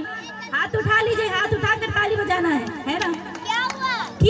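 Children's voices and chatter close by, with a couple of rising cries near the end, over a steady low hum.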